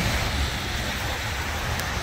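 Steady road-traffic noise at a busy intersection: cars passing on wet pavement give a constant tyre hiss over a low rumble.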